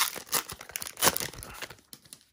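A baseball card pack's wrapper being torn open and crinkled by hand, in irregular crackles that are loudest about a second in and die away near the end.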